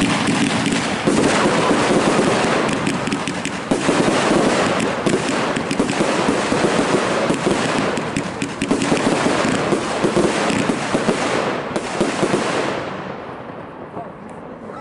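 Two Zena NR.1 fireworks fired together: a dense, unbroken run of launches and sharp bursts that dies away near the end.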